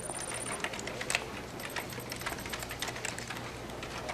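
Computer keyboard typing: irregular quick keystrokes over a faint steady hum.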